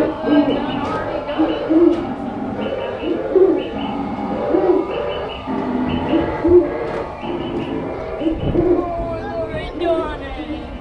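Bird calls repeating in an even pattern about once a second, played as part of the grist mill's themed sound effects around its wooden gears.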